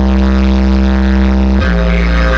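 Music: a sustained chord over a deep held bass note, with the harmony shifting about a second and a half in.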